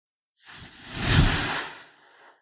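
Whoosh sound effect for an animated logo intro: a single rushing swell with a low rumble under it, starting about half a second in, peaking just past one second and fading away near the end.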